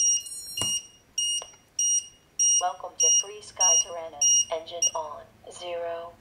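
Short electronic beeps at one fixed high pitch, repeating about every 0.6 s, from a freshly powered-up quadcopter. A voice comes in over the beeps in the second half.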